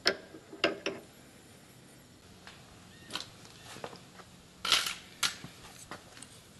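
Sharp clicks and knocks of metal engine parts being handled as a gear and bearing are worked on their shaft in an open ATV engine case. There are three near the start, one about three seconds in, and a louder cluster near the end.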